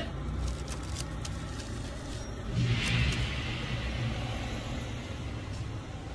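Low rumble of a motor vehicle, swelling about halfway through as it goes by, then fading.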